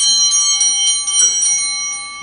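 Altar bells rung at the epiclesis, when the priest calls down the Holy Spirit on the bread and wine: a cluster of small bells shaken about four times a second, several bright tones ringing together and fading near the end.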